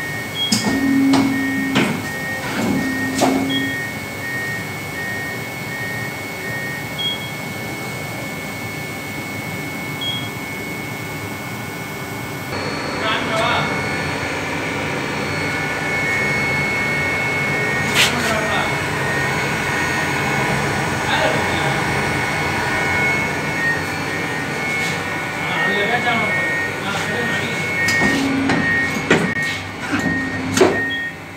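ITOH Robocut 115 computer paper cutter, switched on and humming, with short motor whirs about a second and three seconds in and again near the end. A repeating high pulsed tone runs through the sound, and voices can be heard in the background.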